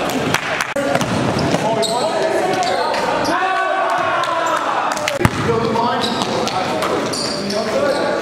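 Live basketball game sound in an echoing gym: a basketball bouncing on the court, players' voices calling out, and short high sneaker squeaks about two seconds in and again near the end, with one sharp thud about five seconds in.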